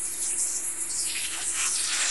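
JBC hot air rework gun blowing a steady hiss of hot air onto an epoxied ASIC chip, heating its pins to reflow the solder.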